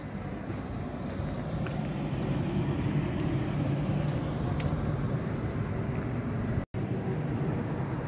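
Motor vehicle traffic on a nearby street: a low, steady engine rumble that grows louder over the first few seconds and then holds. The sound drops out for an instant near the end.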